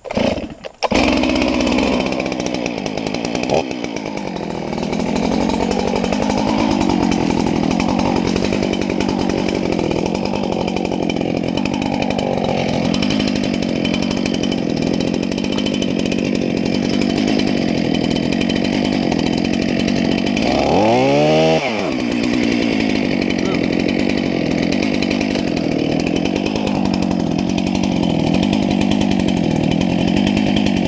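Stihl MS 441 two-stroke chainsaw starting up in the first second, then running at high revs, cutting the face notch into the base of a large dead oak trunk. About two-thirds of the way through, the engine briefly revs up in pitch and then settles back.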